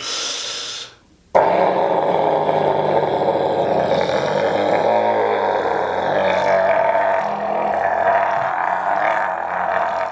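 A man's loud, straining roar. A short burst comes first, then after a brief gap about a second in, one long continuous roar.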